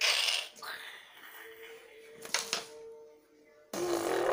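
Sharp clicks of carrom pieces (wooden striker and coins) knocking together on a carrom board, a short cluster about two and a half seconds in, after a brief noisy burst at the start.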